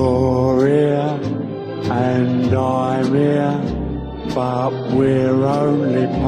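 Music: the slow opening of a late-1950s ballad record, with long held notes that waver slightly, sung wordlessly or sustained over the orchestral backing, a new phrase about every second.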